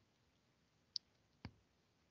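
Near silence with two short clicks about half a second apart: a computer mouse being clicked to advance the presentation slide.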